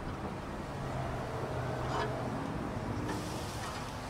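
A steady low mechanical hum, like an engine running in the background, with a faint light tick about halfway through as a game hen is set into a wire rack on the grill.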